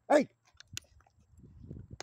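A pit bull making low noises close by through the last second, after a short spoken "hey" and a light click.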